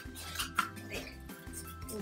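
Scissors snipping into a cardboard toilet-paper roll, several short cuts, over background music.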